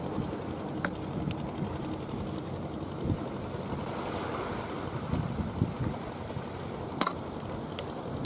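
A palm striking the cap of a glass beer bottle hooked on the edge of a concrete railing, to lever the cap off: a few short sharp knocks, the clearest about seven seconds in. Steady wind noise on the microphone and sea wash run underneath.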